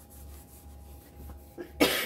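A woman coughs once, sharply, near the end, from a raspy throat.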